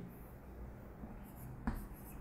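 Chalk writing on a chalkboard: faint scraping strokes, with a sharper tap of the chalk on the board near the end.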